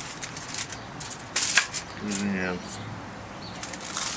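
Aluminium foil crinkling and crackling under hands handling a trout on it, in short irregular crackles with a denser burst about a second and a half in. A brief voiced sound comes about two seconds in.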